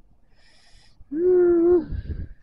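A man's single drawn-out vocal exclamation, held at one steady pitch for under a second, starting about a second in. A faint hiss comes just before it.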